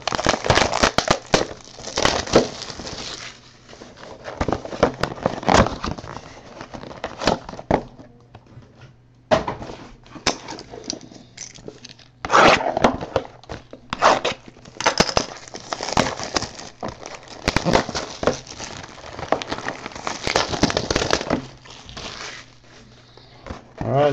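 A 2014 Topps Finest trading-card box and its wrapping being opened by hand, giving crinkling, tearing and rustling in irregular bursts with short pauses between them.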